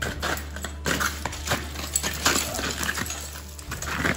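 Steel crampons kicking into waterfall ice in a run of sharp knocks, with ice screws and carabiners on the climber's harness clinking against each other.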